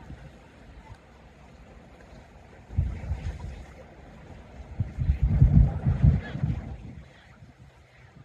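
Wind buffeting the microphone in gusts: a faint steady hiss, a short low rumble about three seconds in, and stronger, louder rumbling from about five to six and a half seconds.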